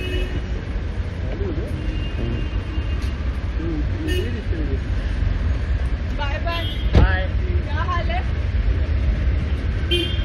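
Busy street noise: a steady low traffic rumble with a brief horn toot about two seconds in and scattered voices. A single sharp thump about seven seconds in, as the SUV's door is shut.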